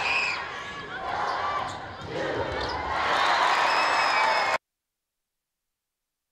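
Live volleyball rally sound: voices with sharp ball hits, then a louder swell of crowd cheering from about three seconds in. The sound cuts off abruptly a little before the end.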